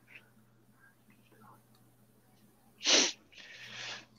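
A person sneezes once, sharply, about three seconds in, followed by a short breathy hiss.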